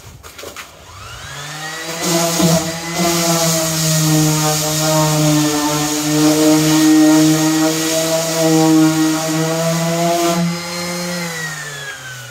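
Electric random orbital sander spinning up to speed over the first couple of seconds, then running steadily against a boat hull with a hum and a rough abrasive hiss. Near the end the hiss drops away while the motor keeps running, and its pitch dips as the pad goes back onto the surface.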